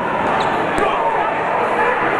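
Crowd of spectators shouting and chattering, with one short sharp thud a little under a second in.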